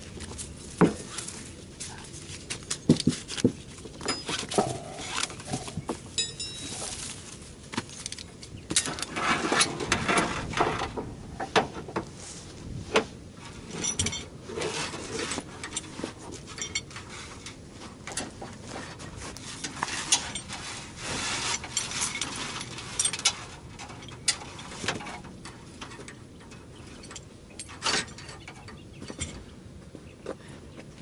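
Irregular metallic clinks, rattles and scrapes from a winch cable and its ratchet-strap hardware being unwrapped and handled, with short bursts of clatter scattered throughout.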